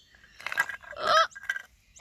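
A voice exclaiming "oh" once, rising in pitch, about a second in, after a brief rustle.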